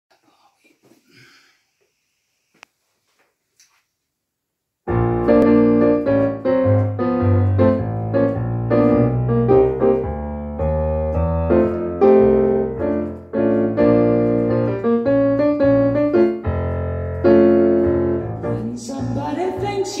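Digital keyboard with a piano sound playing an introduction of chords over a bass line, starting about five seconds in after a few faint rustles and a click.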